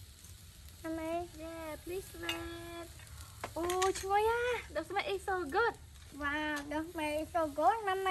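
A woman talking, with shellfish in their half-shells sizzling faintly on a grill beneath her voice.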